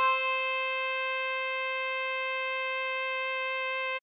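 Diatonic harmonica holding a single blow note on hole 4 (C5) with a slight swell at the start, then a steady hold that cuts off suddenly.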